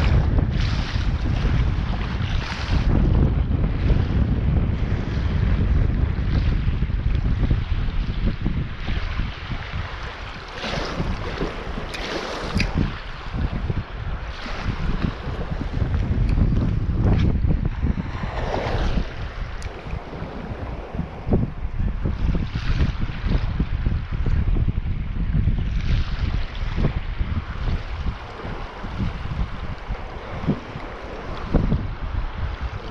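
Sea wind rumbling on the microphone, with small waves washing against the rocky shore now and then.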